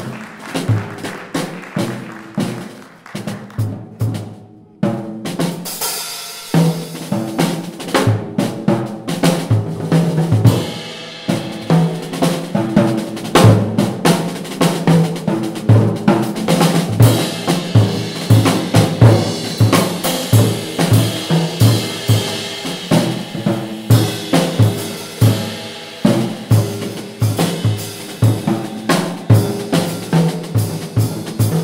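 Jazz drum kit solo: fast, dense strokes on snare, toms and bass drum. It gets louder about five seconds in, with ringing cymbals joining soon after.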